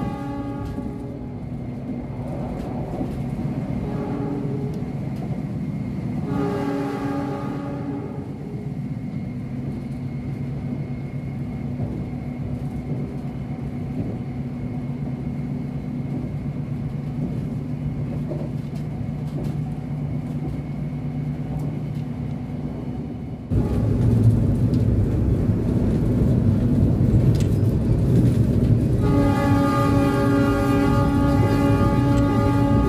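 Steady rumble of a passenger train running at speed, heard from inside the coach, with a train horn sounding at the start, a longer blast about six seconds in, and again near the end. About three-quarters of the way through, the running noise suddenly jumps louder.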